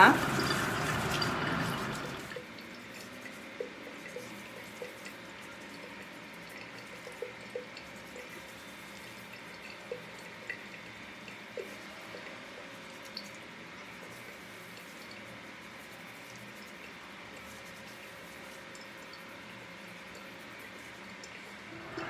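Water running from a bathroom sink tap for about two seconds, then stopping. After that only faint scattered drips and soft small ticks are heard.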